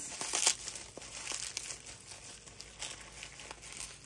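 Packaging crinkling and crackling in irregular bursts as hands pull and tug at it, trying to tear it open, the loudest crackles in the first half-second.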